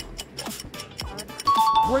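Quiz background music with quick clicks, then about one and a half seconds in a two-note falling chime like a doorbell's ding-dong, the quiz's cue as the answer is revealed.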